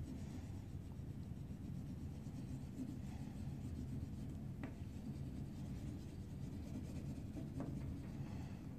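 Oil pastel rubbing and scratching on paper in steady colouring strokes, over a low steady hum.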